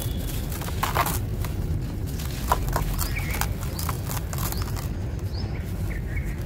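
Dry sand-cement chunks crumbling in the hands, with an irregular run of gritty crackles as pieces break off and sand trickles into a plastic bucket.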